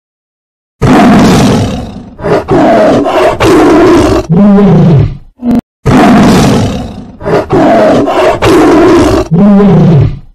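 Tiger roaring and snarling in a string of loud, rough roars starting about a second in. The same few-second recording then plays a second time straight after a brief gap.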